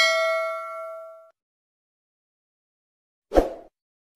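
Notification-bell ding sound effect: one bright chime that rings out and fades over about a second. Near the end comes a short pop.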